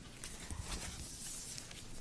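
Faint rustle of paper documents being handled and pages turned, with a few light taps on a table.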